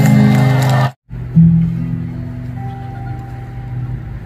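Steel-string acoustic guitar played live: strumming that cuts off abruptly a little under a second in, then after a short gap a chord struck and left ringing, with a few more notes picked over it.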